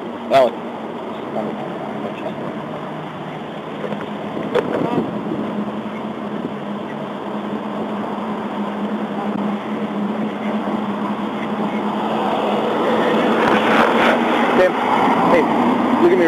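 Indistinct talk over a steady low hum and road traffic noise, with a sharp knock about half a second in. The noise swells near the end as a car passes in the next lane.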